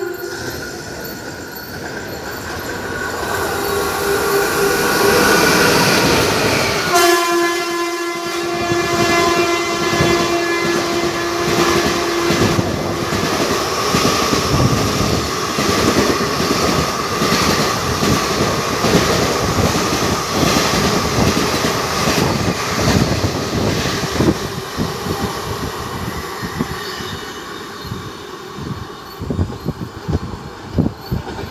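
Express passenger train running through a station at full speed: the locomotive horn blows a long blast as it approaches, sounds again louder about seven seconds in and holds for several seconds, then the wheels clatter rapidly over the rail joints as the coaches rush past, the clatter thinning near the end.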